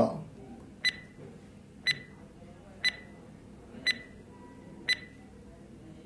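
Quiz countdown timer sound effect: five short, high-pitched ticks, one a second.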